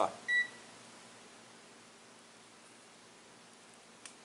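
A digital multimeter gives one short, high electronic beep about a third of a second in, followed by faint room hiss.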